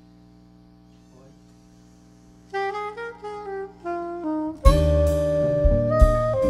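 Instrumental jazz band starting a tune: after a low steady amplifier hum, a soprano saxophone plays an unaccompanied opening phrase about two and a half seconds in, and the full band of drums with cymbals, bass and guitars comes in loudly near the five-second mark.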